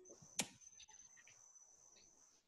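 A machete strikes the hard woody shell of a Brazil nut fruit once, sharply, about half a second in, over a steady high-pitched insect trill from the rainforest.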